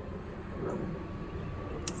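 Steady whir of a small solar-powered greenhouse exhaust fan running, with one sharp click near the end from the inline on/off switch on its cord.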